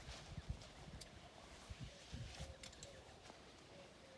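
Faint, scattered low thuds of horses' hooves shifting on the straw-covered plank floor of a livestock trailer.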